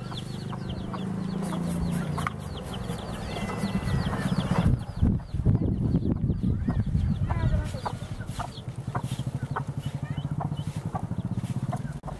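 Birds calling in quick, repeated short chirps over a steady low rumble, with a few louder irregular bumps about halfway through.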